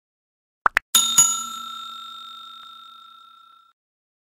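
Sound effect of a subscribe-button animation: two quick clicks of a button press, then a bell dinging twice in quick succession and ringing out, fading over about three seconds, the notification-bell chime.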